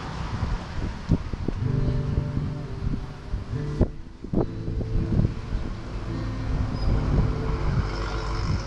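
Acoustic guitar strumming chords, with held notes ringing between the strums. A low wind rumble on the microphone lies under it.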